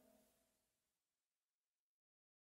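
Near silence: the last faint trace of a song's fade-out dies away into complete digital silence.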